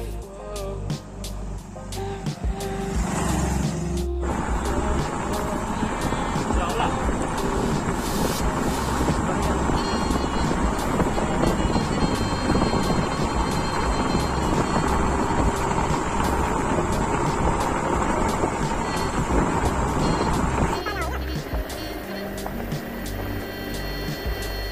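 Background music, giving way about four seconds in to the live sound of a motorcycle being ridden: engine running under a steady rush of wind on the microphone. Near the end the music comes back in.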